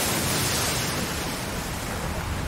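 A steady rushing noise with no pitch to it, spread from deep to high and easing off slightly toward the end.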